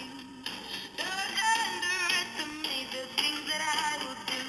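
A song with singing playing from an iPhone 5's built-in speaker, the phone seated in a battery case that channels the sound upward through two small holes, making it so much clearer.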